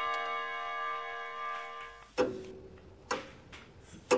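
A held musical chord fades out, then a clock ticks about once a second, a comic sound effect for an awkward pause while he searches for words.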